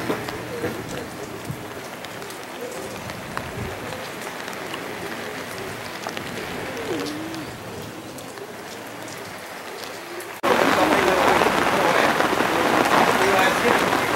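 Steady rain falling. About ten seconds in, the sound changes abruptly to much louder, closer rain pattering on the umbrella overhead.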